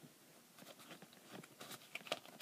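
Near silence, with faint rustling and small clicks of fingers handling a duct-tape wallet and sliding a card from its pocket.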